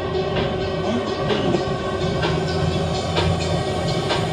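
Electronic dance music from a live DJ mix on Pioneer CDJ players and an Allen & Heath Xone mixer, with a steady beat over a sustained bass line.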